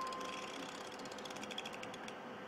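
Small mechanism clicking, the clicks coming faster in a quick run near the end and then stopping. In the first half second a struck chime note dies away.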